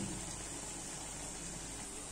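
Semolina medu vada batter frying in hot oil in a kadhai: a steady sizzle of bubbling oil.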